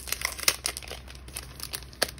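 Clear plastic cello packet of paper ephemera crinkling in the hands as it is turned and handled, with irregular crackles, the sharpest about half a second in.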